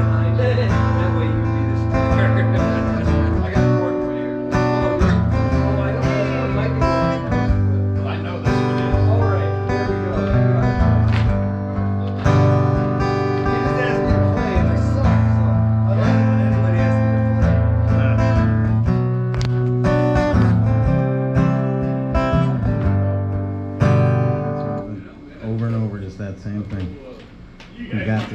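Acoustic guitar strummed through a song, with full, ringing chords over a steady bass, stopping abruptly about a second or two before the end.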